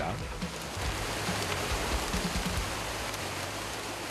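Water sloshing and plastic crinkling as sealed plastic fish-transport bags holding blacktip reef sharks are shaken by hand, a steady rain-like hiss. The bags are agitated to keep the sharks moving so they can keep breathing.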